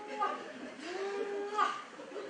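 A person's voice making long, drawn-out moo-like sounds: a short one, then a longer held one about a second in.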